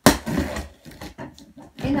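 Cardboard delivery box being handled and cut open: a sharp knock at the start, then quieter scraping and rustling of the cardboard.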